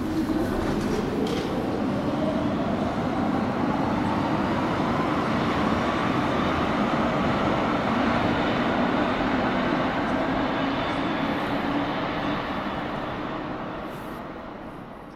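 DUEWAG U2-type Stadtbahn train pulling out of an underground station. Its traction motors whine upward in pitch as it accelerates, over a steady rumble, and the sound fades near the end as the train enters the tunnel.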